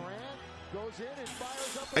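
Basketball game broadcast audio playing quietly: a commentator's voice over the arena crowd.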